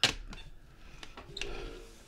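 A sharp click, then a faint steady electronic tone from the Shocking Liar lie-detector toy as it scans the hand placed on it.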